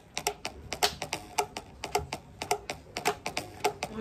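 A rapid, somewhat uneven run of sharp clicks or taps, about six a second.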